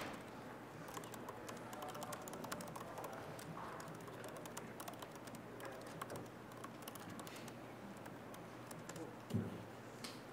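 Laptop keyboard typing: a faint, quick run of keystroke clicks as a sentence is typed out. A short low thump near the end.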